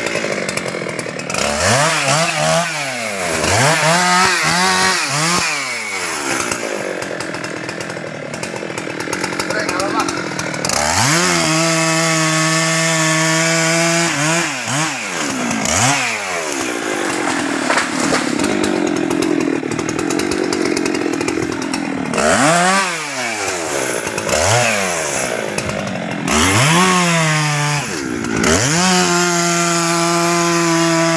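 Husqvarna 390 XP two-stroke chainsaw felling a small teak tree. It is revved up and down again and again in short throttle blips, and runs at steady high speed for a few seconds while cutting, once in the middle and again at the end.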